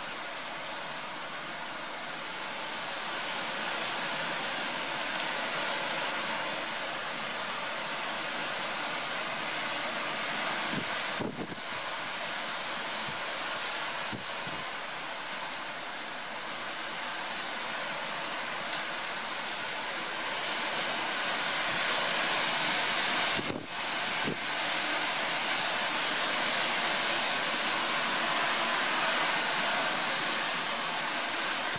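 Storm-force wind blowing through a stand of tall trees, a steady rushing of leaves and branches that grows louder in gusts, strongest in the last third.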